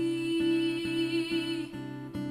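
A woman singing with her own acoustic guitar: one long held sung note that ends shortly before the end, over steady strumming at about three strokes a second.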